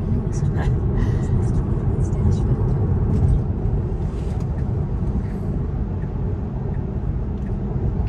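Steady low road and tyre noise inside an electric car's cabin at highway speed, with no engine sound.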